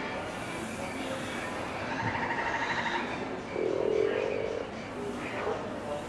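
Frog croaks from the bayou scene's sound effects: a rapid pulsed trill about two seconds in, then a deeper, louder croak lasting about a second.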